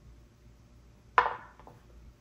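A four-sided die rolled into a dice tray: one sharp clack about a second in as it lands, followed by a few faint rattles as it settles.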